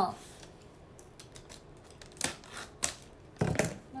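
A small wrapped bottle of liquid being handled and turned over: a couple of sharp clicks a little over two seconds in, then a dull knock about three and a half seconds in.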